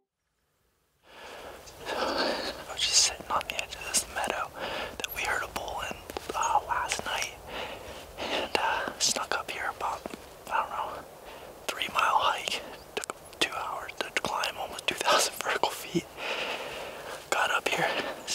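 A man whispering close to the microphone in short phrases. It starts about a second in, after a brief silence.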